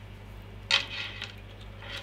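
Logic analyzer probe adapter and its bundle of probe leads rattling and clinking as they are handled: a short clatter about two-thirds of a second in and a softer one near the end.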